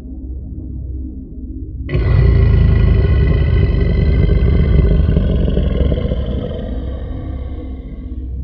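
Background music: a low rumbling drone, joined suddenly about two seconds in by a louder sustained chord that holds and slowly fades.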